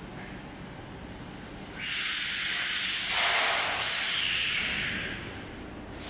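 Fried banana chips sliding out of a stainless steel mesh fryer basket onto a perforated stainless steel table, a loud dry rustling hiss that starts about two seconds in and fades near the end, over a steady low machine hum.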